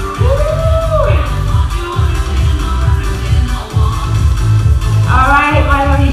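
Background dance-pop music with a heavy pulsing bass beat and a sung vocal line.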